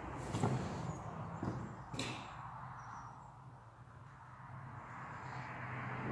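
Scattered footsteps and light knocks on a flagstone floor, the sharpest knock about two seconds in, over a faint low hum.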